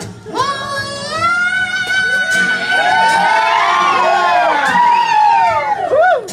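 A man sings a long held falsetto note. From about halfway through, several voices join in with overlapping rising and falling falsetto whoops.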